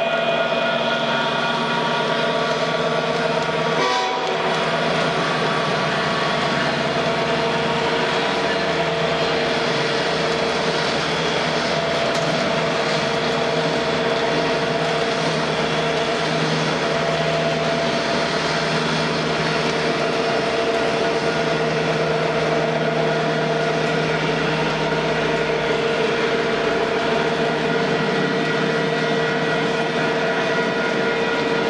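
MTH O gauge model diesel locomotives running with a freight train: a steady, continuous rumble of the locos' sampled diesel engine sound, mixed with the hum of their motors and wheels rolling on the three-rail track.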